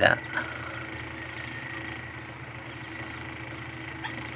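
Outdoor background of chirping insects and birds: a steady faint hum under short, high chirps that repeat irregularly, two or three a second.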